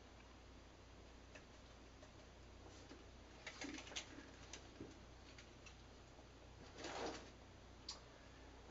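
Near silence: faint room hum with a few soft clicks and rustles as a yeast packet is opened and handled over a glass carboy, the longest rustle about seven seconds in.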